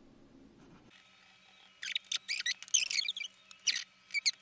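A fountain pen's broad Jowo nib scratching across paper in a quick run of short strokes, starting about two seconds in and lasting about two seconds after a quiet start. The scratchiness is the nib's feedback, which can be heard as it writes.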